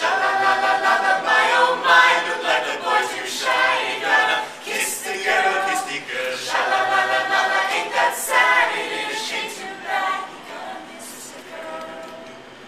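A mixed a cappella group of male and female voices singing together in harmony, with no instruments. The voices come in together at full strength at once and thin out and fall quieter about ten seconds in.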